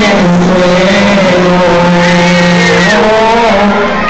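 Male voices singing a long held note of a devotional chant through microphones and a PA, the pitch sustained for about three seconds before moving to a new note near the end.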